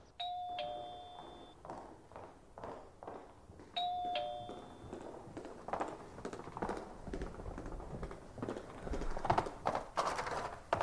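Two-note ding-dong doorbell chime, a higher tone stepping down to a lower one, rung twice about three and a half seconds apart. Soft footsteps and knocks follow as someone crosses the room to answer the door.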